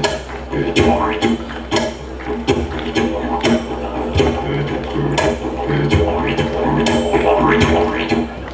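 Didgeridoo playing a continuous drone with a rhythmic pulsing low note, with sharp percussive hits falling in a regular beat over it.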